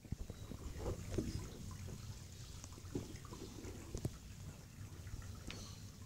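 Faint handling noise from a phone being moved in close: low rustles and soft knocks, with a sharp click near the start and another about four seconds in.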